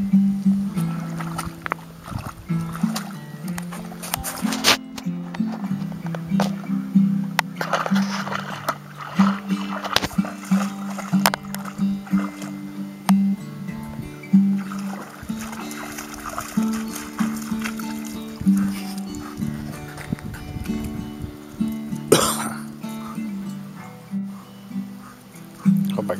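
Acoustic guitar music, a steady run of plucked notes.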